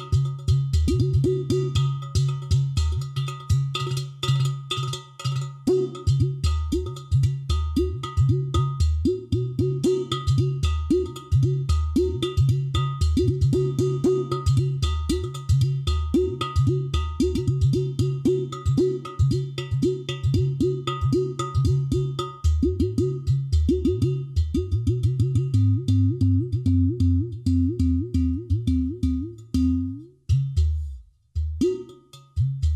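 Udu clay pot drums played with the hands: a fast, steady rhythm of sharp strikes on the clay bodies over deep bass tones from the side holes, the low notes bending in pitch. Near the end the strokes quicken into a rapid run.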